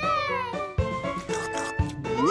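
Children's song backing music with a regular drum beat; near the start a drawn-out pitched note slides downward.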